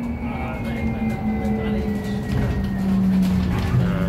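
City bus heard from inside the cabin: a steady drivetrain hum over road rumble, its tone slowly falling in pitch as the bus slows.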